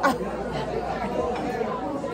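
Background chatter of many overlapping voices in a busy restaurant dining room, with no single clear speaker.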